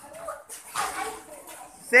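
A loose hubbub of many children's voices and scuffling feet on paving while a group practises kicks. At the very end a man's loud shouted count begins.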